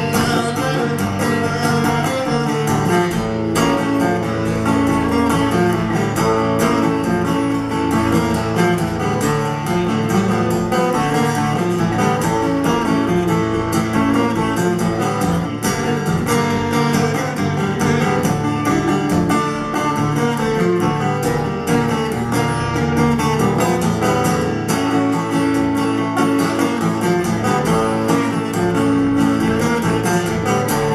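Steel-string acoustic guitar strummed in a steady rhythm.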